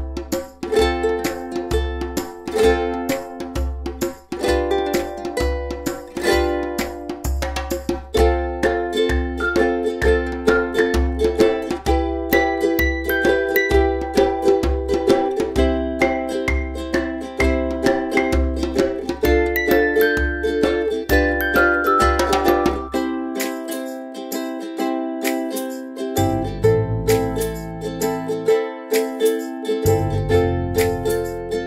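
Light background music of quick plucked-string notes over a steady low beat; the beat drops out for a few seconds near the end, then returns.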